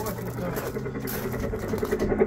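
Electronic helicopter engine sound effect from a playground helicopter's built-in speaker: a steady low hum.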